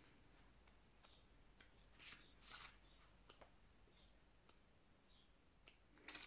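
Near silence with a few faint, soft rustles and clicks of paper pages being leafed through in a small card guidebook.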